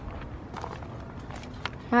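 Footsteps on dry ground with a few faint crunches and clicks, over a low rumble of wind on the microphone.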